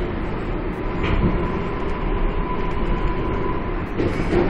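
Steady rumble of an R142A subway car running, heard from inside the car, with a faint steady whine that comes in about a second in and stops near the end.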